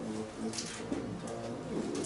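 Indistinct, low-pitched male speech, murmured off the microphone.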